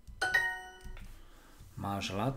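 Language-learning app's correct-answer chime: two quick bright notes in close succession, ringing out for about half a second.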